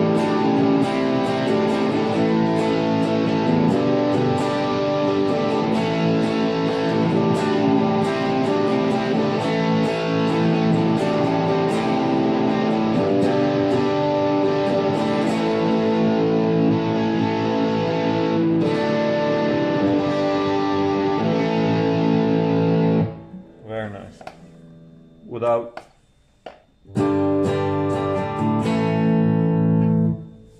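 Epiphone Les Paul electric guitar on its bridge pickup, played through the Boss GT-1000's Warm Overdrive and heard from KRK Rokit 8 studio monitors through a phone microphone. Overdriven chords and riffs run continuously, then break off about three-quarters of the way through. A few short stabs follow before the playing picks up again near the end.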